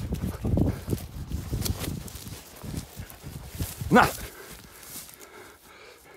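A brown bear running up through forest undergrowth: uneven rustling and thudding steps. About four seconds in, a man gives a short, rising shout of "Na!" as he holds food out to it.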